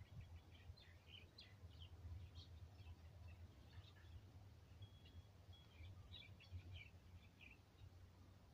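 Near silence: faint, scattered bird chirps and short whistled notes over a low steady rumble.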